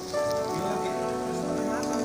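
Meat, sausage and onions sizzling on a hot griddle pan as they are stirred with metal tongs, with music playing over it.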